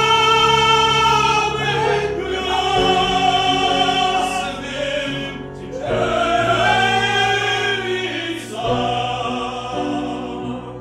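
Male vocal trio singing in harmony in full operatic voice, with grand piano accompaniment. The voices hold long notes and move to new chords a few times, with a short breath-break near the middle.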